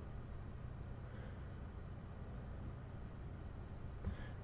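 Faint steady background hum and hiss: room tone picked up by the narrator's microphone.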